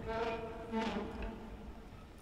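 A soft, buzzing musical drone imitating a bumblebee, with a couple of brief swells, fading away over the two seconds.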